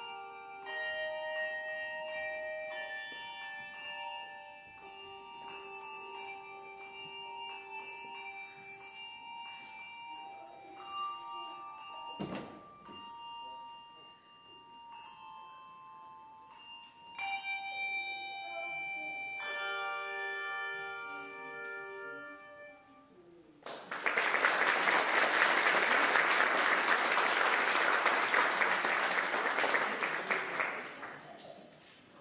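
Handbell choir playing, with ringing chords struck every second or two that die away near the end of the piece. Audience applause breaks out about 24 s in and carries on loudly.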